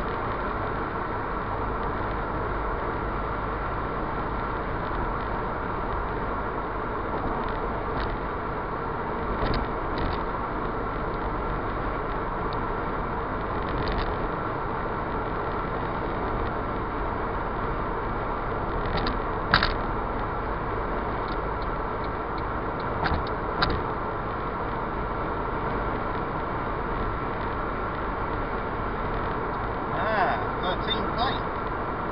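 Steady road and engine noise inside a Ford Fiesta Mk6 cruising at motorway speed, with a few brief knocks, the loudest about two-thirds of the way through.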